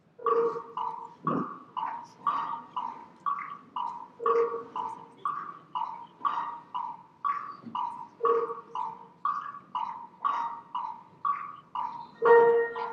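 Music of short, tuned percussive notes repeating at about two a second, with a lower note every four seconds. It starts suddenly.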